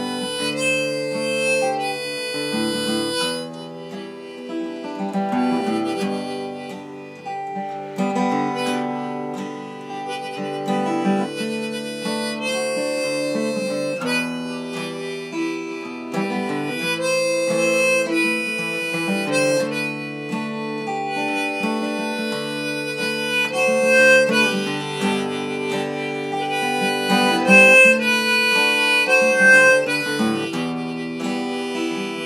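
Harmonica in a neck rack played over acoustic guitar chords, an instrumental passage with long held harmonica notes.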